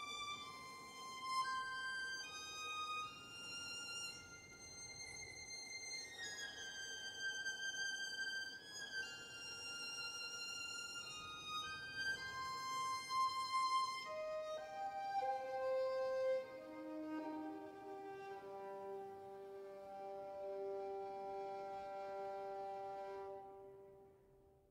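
Sampled first-chair solo violin playing a slow legato melody sul tasto, bowed over the fingerboard for a very quiet, soft and intimate tone. The line moves through high notes, then steps down in the second half to end on a long held lower note.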